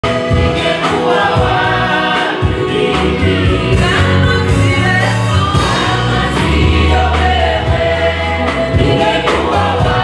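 A worship team of several men and women singing a gospel song together into microphones, backed by a band with a bass line that shifts notes every second or so and occasional drum strokes.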